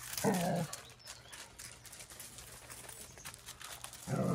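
A dog gives one short growl during rough play, about a quarter second in, then faint scuffing and clicking of paws on gravel.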